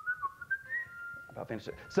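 A faint, high whistling tone that steps between a few pitches, then fades as speech resumes near the end.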